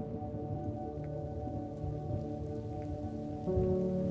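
Rain falling, with a faint low rumble of thunder, under a sustained ambient music chord that shifts and grows louder about three and a half seconds in.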